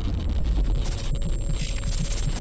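Channel logo intro sound: a loud, deep rumble with a hiss over it and a faint steady tone beneath.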